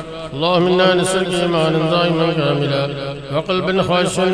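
A man's voice chanting an Arabic devotional supplication, the notes drawn out and bending in a slow melody over a steady low hum.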